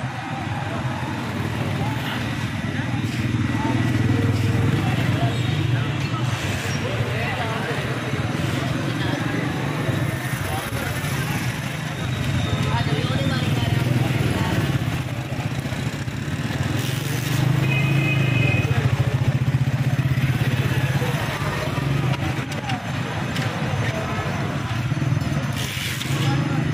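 Busy street ambience of motorcycle and car engines running and passing, mixed with the chatter of many people.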